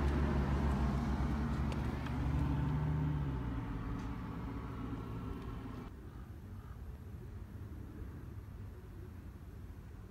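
A motor vehicle's engine running nearby, a low hum that drops in pitch about three seconds in and then fades, leaving faint outdoor background.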